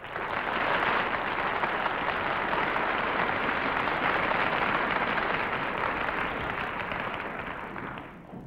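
Studio audience applauding and laughing, a steady wash of clapping that dies away over the last second or so.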